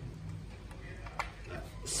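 Mostly quiet room tone with a faint low hum, broken by a faint single click about a second in from a small audio decoder and its RCA cable being handled; a man's voice starts near the end.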